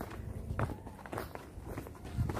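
Footsteps on a dirt path: four steady walking steps, about one every half second or so, from someone walking with the camera.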